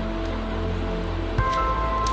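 Background music of sustained, held notes, with a new higher chord coming in about one and a half seconds in.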